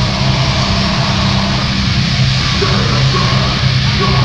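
Live grindcore band playing loud, with distorted electric guitar and bass holding low, steady notes.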